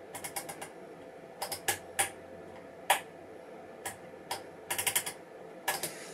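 Irregular sharp clicks, some single and some in quick runs, from knobs and switches being worked by hand on bench test equipment, over a faint steady hum.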